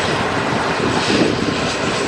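Floatplane's twin turboprop engines running as it flies low over the sea: a loud steady hum with a faint high whine.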